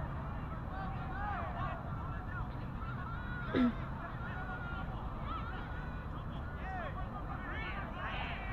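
A flock of geese honking: many short calls, each rising then falling in pitch, overlapping one another without a break. There is a brief louder shout about three and a half seconds in.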